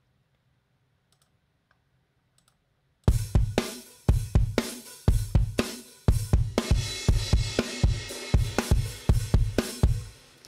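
Near silence with a few faint mouse clicks, then about three seconds in a sampled rock drum kit from UJAM Virtual Drummer BRUTE starts playing a 115 bpm groove, with kick, snare and hi-hat/cymbals in a mid-90s rock sound.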